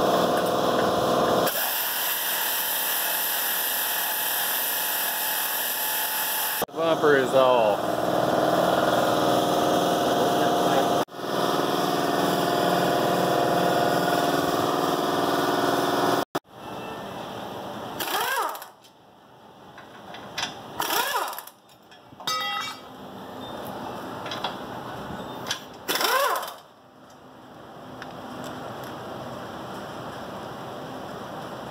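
Pneumatic tools on an air hose, an air ratchet or impact wrench, running in long bursts with a steady hiss while bumper bolts are undone. They then run in shorter separate bursts, one with fast hammering clicks a little past the middle.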